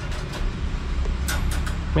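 Metal latch and door of a wire pet cage being worked open, giving a few light clicks and rattles, most of them in the second half. A steady low rumble runs underneath.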